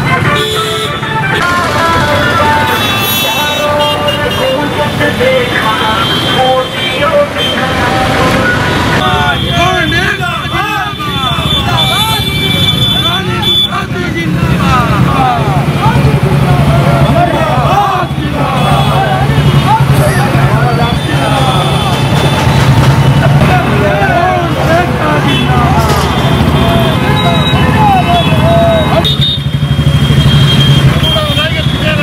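A group of motorcycle engines running together, with vehicle horns honking during the first third. From about a third of the way in, many voices shout over the engines, and the engine noise grows louder and steadier in the second half.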